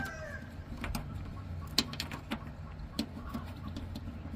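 The tail of a rooster's crow fading out at the start, with bird and chicken sounds in the background. A few sharp clicks and taps of plastic electrical fittings being handled, spaced under a second apart, over a faint low hum.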